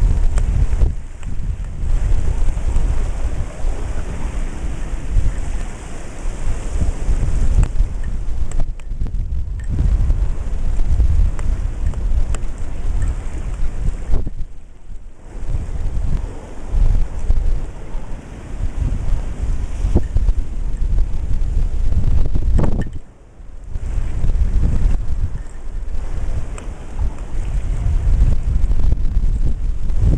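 Wind buffeting the microphone in loud, gusting rumbles over the wash of ocean surf. The wind drops out briefly twice, about halfway through and again about three quarters of the way in.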